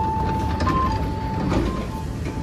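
Train's sliding doors opening with a sudden burst of sound, followed by a two-note electronic chime alternating high and low, about one change a second, over a low rumble.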